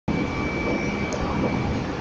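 Steady mechanical noise inside the cab of a Meitetsu electric train, with a thin high whine held throughout from the train's onboard electrical equipment.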